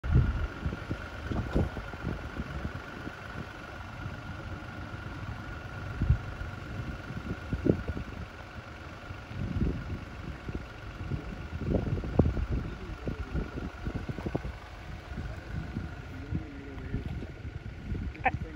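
Vehicles running on a road, mixed with uneven gusts of wind buffeting the microphone. A faint steady high whine runs underneath.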